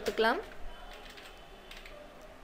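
Computer keyboard typing: faint key clicks after a man's voice finishes a word at the start.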